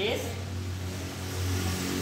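A steady low hum, as of a running motor, with no strikes or changes in pitch.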